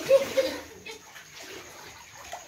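Floodwater sloshing and lapping on the floor of a flooded house, loudest briefly at the start and then fainter.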